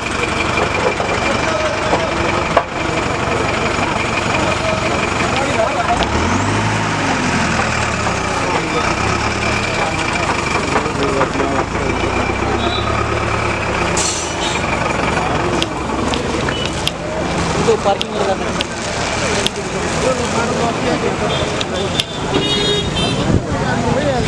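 Heavy road-vehicle engine running at the roadside, its low note swelling for several seconds from about six seconds in, with a crowd talking indistinctly.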